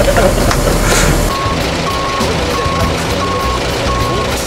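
Reversing alarm of construction machinery beeping steadily, a little under one and a half beeps a second, starting about a second in over the low running of a heavy engine.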